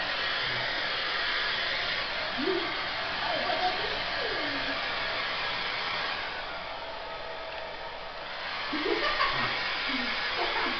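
Handheld hair dryer blowing steadily while drying a small dog's coat. The noise thins out in the upper range for a couple of seconds past the middle, then comes back full, and faint voices come through under it.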